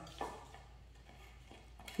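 A dog gnawing a large chew bone, with faint scraping and a few soft knocks of teeth on bone; the sharpest knock comes about a quarter second in.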